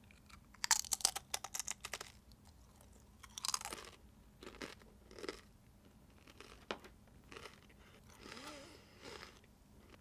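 A crisp tortilla chip being bitten and chewed: a quick run of loud crunches in the first couple of seconds, then scattered softer crunches as the chewing goes on.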